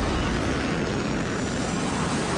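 Cartoon jet-thrust sound effect, steady and dense, as a flying robot blasts upward on a flame trail.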